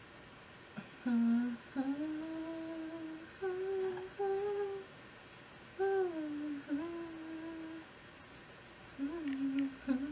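A woman humming a tune: a string of held notes that slide from one pitch to the next, in short phrases with two brief pauses.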